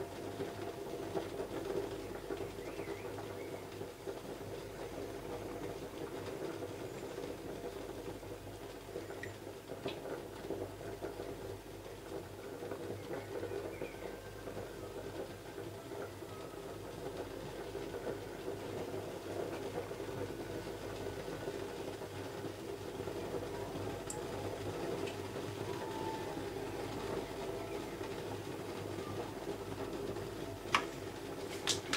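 A steady low hum, like an appliance or room tone, with a few faint small clicks.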